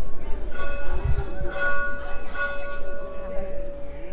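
A metal temple bell ringing. It is struck again a few times, so that its tone swells and then carries on ringing.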